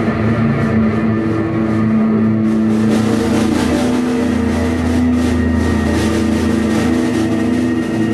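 Live rock band playing a loud, droning psychedelic jam: sustained amplified guitar and bass tones held under a steady wash of higher sound.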